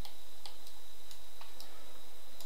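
Computer mouse clicking: sharp, short clicks at uneven spacing, about two to four a second, over a steady high-pitched whine.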